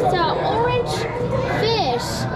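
Children's voices, high and swooping, with background chatter over the steady din of a busy public hall.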